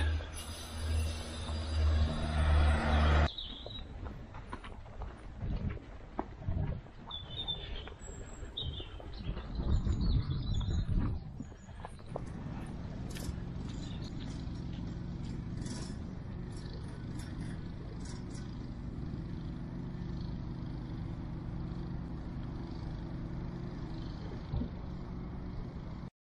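Outdoor road traffic: a loud vehicle sound in the first few seconds, then a steady low traffic hum with a few bird chirps.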